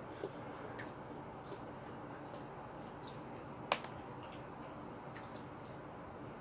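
Quiet background with a few scattered small clicks and ticks, one sharper click a little under four seconds in.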